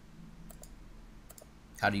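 A few faint, sharp clicks of a computer mouse.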